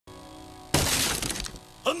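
Soft held musical notes, then about three quarters of a second in a sudden loud smashing crash that fades over most of a second, a cartoon sound effect; a man's voice begins near the end.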